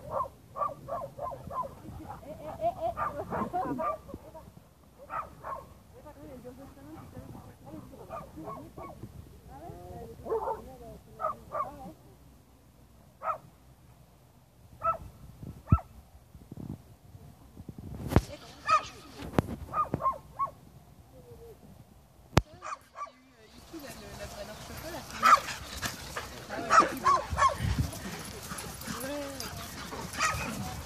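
Several dogs playing together, giving short yips and barks in scattered bursts, busiest and loudest in the last several seconds.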